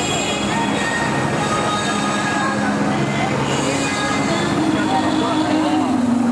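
Busy street-parade din: many voices of a walking crowd over a steady low drone of held tones.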